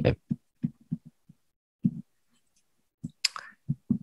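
Soft, irregular taps and clicks of a stylus on a tablet as words are handwritten, with a short breath-like hiss about three seconds in.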